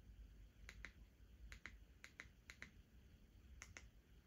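Faint paired clicks, five presses in about three seconds, each a press and release: the buttons of a TV remote control being pressed to move through an on-screen menu.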